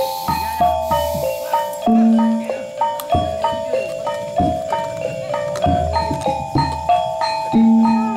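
Live kuda kepang ensemble music: struck metal keyed percussion plays a repeating stepped melody of ringing notes, with deep ringing strokes every second or two and sharp drum beats.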